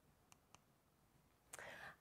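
Near silence: room tone, with two faint clicks under a second in and a short faint breath near the end.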